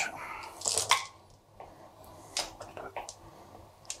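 Dice clicking as they are handled and rolled onto a gaming mat: one sharper click about a second in, then a few scattered light clicks.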